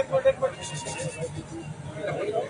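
A short, loud vocal call at the very start, followed by a brief patch of crowd noise, over a steady low hum.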